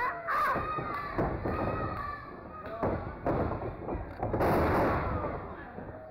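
Several heavy thuds of wrestlers' bodies hitting a pro wrestling ring mat, the loudest and longest about four and a half seconds in.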